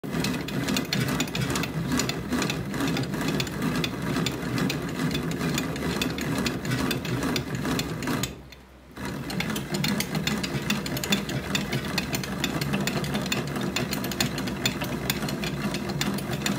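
Bat-rolling machine's rollers turning a composite fastpitch softball bat barrel, rolled by hand under pressure. A steady mechanical clatter of dense rapid ticks, which stops briefly a little past halfway and then carries on.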